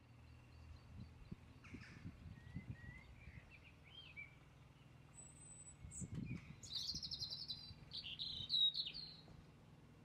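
Birds chirping and singing, a few gliding calls at first, then a quick trill and the loudest chirps in the second half, over a steady low rumble.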